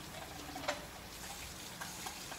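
Steady hiss of falling rain, with a few light ticks over it.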